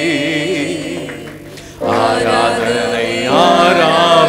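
Tamil Christian worship song, sung live into microphones over music. The held line dies away about a second in, and the singing and music start again sharply just before halfway.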